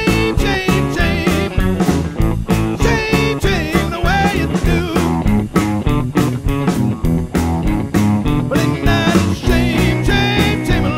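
Blues/rock'n'roll band playing an instrumental passage: guitar with bending, wavering notes over bass and drums keeping a steady beat.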